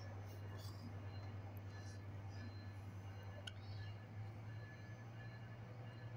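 Low, steady hum of a Metrolink commuter train's diesel locomotive as the train departs, growing a little louder after about four seconds.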